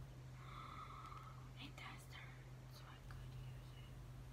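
Faint whispering under the breath, with a few light clicks as a plastic phone case and its pop grip are handled, over a steady low hum.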